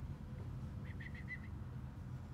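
Steady low background rumble, with a bird giving a quick run of about five high chirps about a second in.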